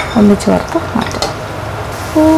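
A slotted metal spatula stirring and scraping in a nonstick wok, with a sharp clink at the start, as cashews and raisins fry in hot ghee with a sizzle underneath.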